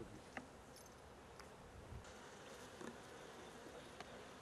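Faint buzzing of honeybees around open hive frames, with a few soft knocks.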